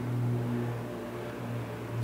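A steady low hum with no other sound: the room tone of the chapel.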